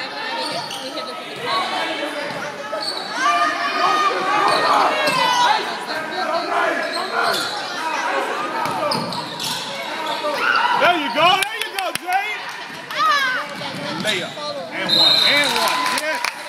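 Basketball bouncing on a hardwood gym court during play, amid shouting voices from players and spectators, echoing in the large gym.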